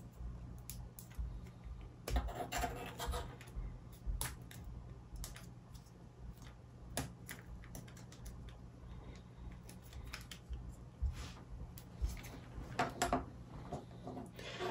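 Small laser-cut wooden kit pieces being handled and pressed together: irregular light clicks and taps, with a brief scraping rub about two seconds in and again near the end. A faint steady low hum sits underneath.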